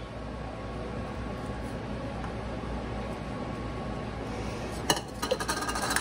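Steady low room hum, then, about five seconds in, a short run of glassy clinks, as of a small glass prep bowl being set down on a glass-ceramic cooktop.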